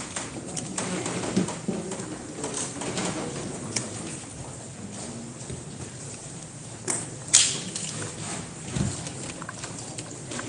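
Background sound of a crowded courtroom: shuffling and scattered clicks, with a couple of short low sounds, and two sharp knocks a little before and after seven seconds in, the second the loudest.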